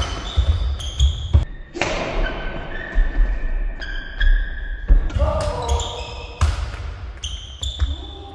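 Badminton doubles rally on an indoor court: repeated sharp racket hits on the shuttlecock and heavy footfalls, with sneaker soles squeaking on the court floor, in a reverberant hall.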